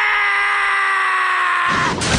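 A young man's voice in one long, loud, sustained scream, its pitch slowly sinking. Near the end a loud rush of crashing noise takes over as the scream breaks off.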